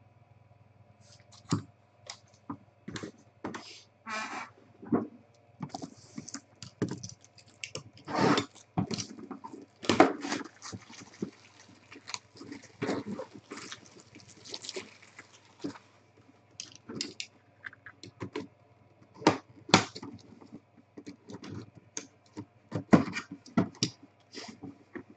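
Clear plastic shrink-wrap being punctured, torn and crinkled off a cardboard trading-card box, heard as irregular crackles, rustles and sharp clicks from handling. The cardboard box lid is handled and opened near the end.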